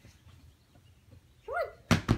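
A short voiced "boing" with a rising-then-falling pitch about one and a half seconds in, followed by a sharp, loud knock near the end.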